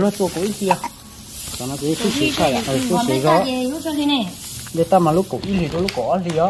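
Unhusked rice seed rustling with a steady, dry hiss as hands stir and scoop it inside a woven plastic sack, under people talking.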